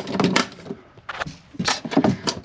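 Handling noise: a few light clicks and knocks as hands touch the wiring panel's edge and a metal handle beside it. The clicks come near the start and again late on, with a quieter gap in the middle.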